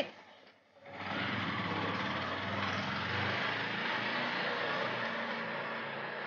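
Tuk-tuk's small engine running as the auto-rickshaw pulls away, coming in about a second in and then holding steady.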